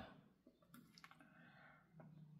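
Near silence with a couple of faint clicks about a second in: a small plastic glue-stick cap being dabbed onto an ink pad.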